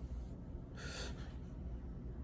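A single short, quiet breath about a second in, over a low steady room hum.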